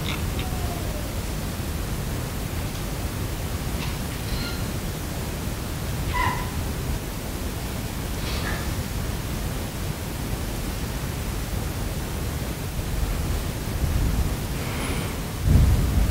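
Steady low room rumble in a large hall, with a few faint, short high-pitched sounds about four, six and eight seconds in, and a louder low swell near the end.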